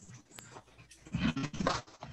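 A dog whining, two short sounds a little after a second in.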